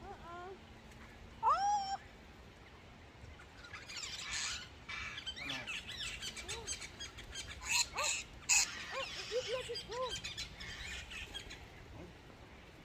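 Australian ringneck parrots calling at close range: two rising whistled calls in the first two seconds, then a busy flurry of harsh, scratchy chattering calls through the middle, easing off near the end.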